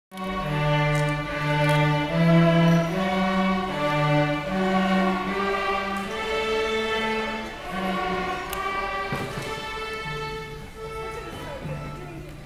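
Young student string orchestra, mainly violins, bowing a slow melody of long held notes together, growing softer in the later part and ending on a long held note near the end.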